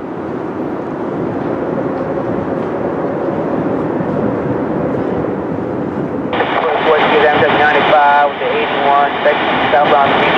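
Steady rushing noise of a jet airplane passing overhead. About six seconds in, a railroad scanner radio breaks in over it with a tinny voice transmission.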